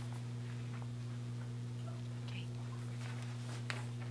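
A steady low electrical hum, with a few faint clicks and a softly spoken "okay" about two seconds in.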